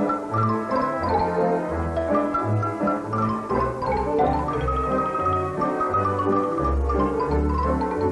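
Romanian folk band playing a fast tune led by a xylophone, running quick struck notes, over violins, cimbalom and a double bass plucking a bass line.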